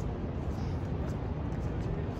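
City street noise: a steady low rumble of downtown traffic.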